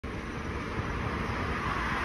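A steady, low rumbling noise that grows slightly louder.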